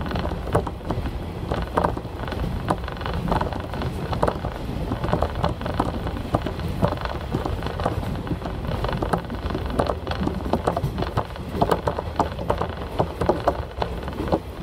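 Train interior noise from a diesel railcar running along the line: a steady low rumble with a dense, irregular patter of clicks and rattles from the wheels on the rails.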